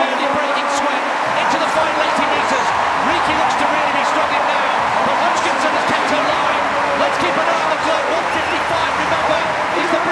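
Large stadium crowd cheering and shouting, a steady unbroken roar of many voices.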